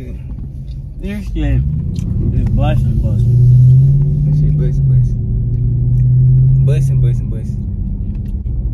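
Car engine and road drone heard inside the cabin while driving: a low steady hum that swells about a second and a half in, is loudest mid-way and eases off near the end.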